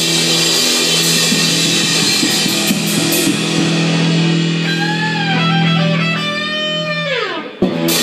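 Rock band of electric guitars and drum kit playing loud: a held chord, then bending lead-guitar notes, and a guitar note gliding steeply down in pitch before a sharp hit near the end.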